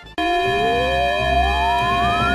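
Alarm siren starting abruptly a moment in: one slow wail rising steadily in pitch over steady held tones.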